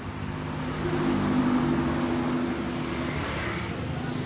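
A motor vehicle engine running at a steady, even pitch, growing louder about a second in and easing off a little later, over general street traffic noise.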